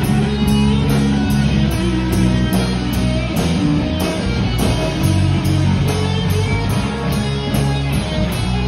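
Live rock band playing an instrumental passage: electric guitars over bass and a drum kit, with cymbal hits about twice a second.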